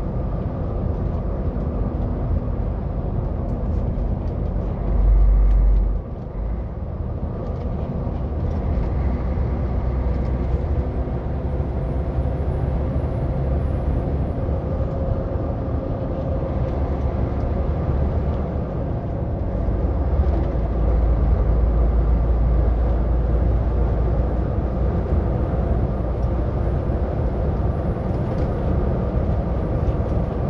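Steady engine drone and road rumble heard inside a truck cab cruising on a highway. There is a heavier low rumble for about a second some five seconds in, and the rumble grows louder a little after the middle.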